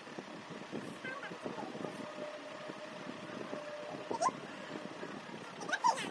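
Cloth rustling as a scarf is knotted into a blindfold, with a steady faint hum underneath and a few brief murmured voices; talking starts near the end.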